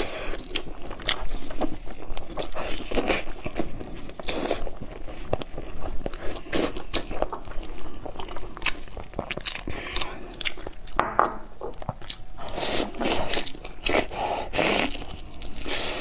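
Close-miked eating: a person biting and chewing glazed braised meat rolls and pulling them apart with gloved hands, heard as many short irregular clicks and wet mouth sounds.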